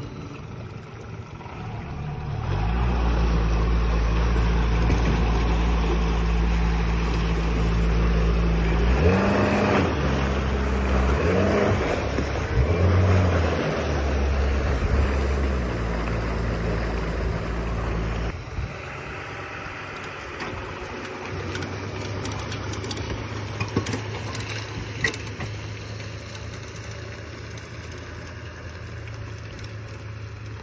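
Yamaha 115 outboard motor running under throttle to power the boat onto its trailer, its engine speed rising and falling in the middle, then shut off abruptly. After that a quieter, steady engine hum from the pickup truck pulling the boat and trailer up the ramp.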